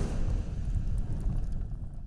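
Sound effect for an animated fire-themed logo: a dense rumbling noise, heaviest in the low end, that fades away near the end.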